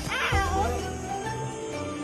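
Film score music with sustained tones, with a short squeaky cartoon call sliding down in pitch near the start.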